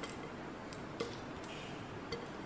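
A few faint, sharp ticks spaced irregularly, about a second apart, over a low steady background hiss.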